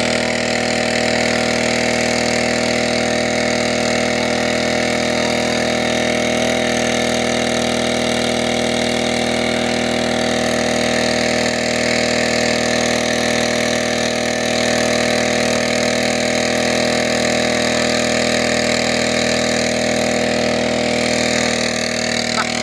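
Small petrol engine of a portable firefighting water pump running steadily at a constant speed.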